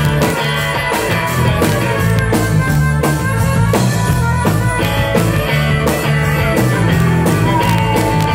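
Live rock band playing loud, with drum kit and electric guitar over a steady beat; a long held note comes in near the end.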